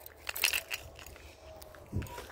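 Handling noise on a phone microphone: a short burst of crackling clicks about half a second in, then a low knock near the end as the phone is swung round.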